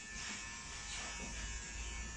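Steady buzzing of a small electric motor.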